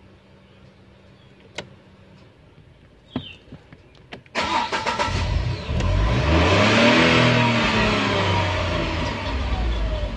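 Tata Tigor's engine starting, heard from inside the cabin: a few faint clicks, then about four seconds in the engine fires with a sudden loud burst. Its speed flares up and then slowly eases back toward idle.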